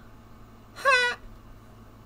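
A man's brief, high-pitched, wavering vocal whine, a single short cry about a second in.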